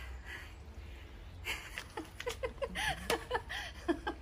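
A woman laughing in a run of short, breathy bursts, beginning about a second and a half in.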